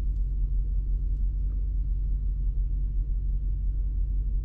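Steady low rumble of the Lexus GX470's 4.7-litre V8 idling, heard inside the cabin, with no change in speed.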